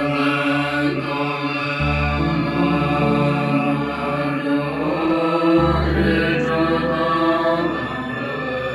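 Tibetan Buddhist prayer chant, voices intoning a mantra-like recitation over a musical accompaniment with a low sustained bass note that changes pitch twice.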